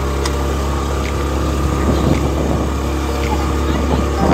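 Motorcycle engine running steadily as it climbs a rough gravel road, a constant low drone.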